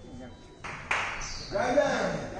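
A metal bell struck once about a second in, its high ring hanging on briefly, as part of the aarti; voices follow near the end.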